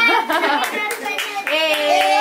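A small group clapping by hand, with voices calling out over the claps. About one and a half seconds in, a held musical tone begins.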